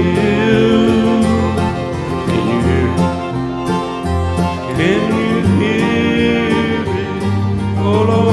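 Bluegrass music: acoustic guitar and other string instruments playing with a steady beat.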